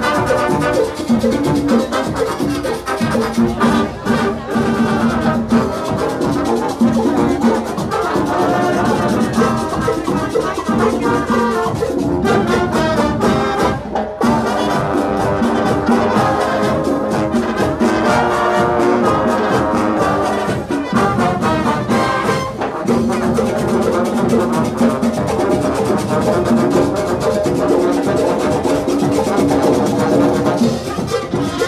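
Marching band of brass and drums playing a lively tune live in the street, with a steady drum beat under the horns.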